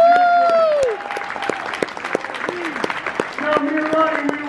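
A single loud, drawn-out cheer that rises and then falls in pitch for about a second, followed by scattered hand clapping from a small audience.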